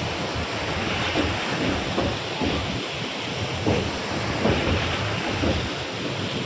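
Wide, fast-moving floodwater flowing across fields: a steady wash of water noise, with wind buffeting the microphone in irregular gusts.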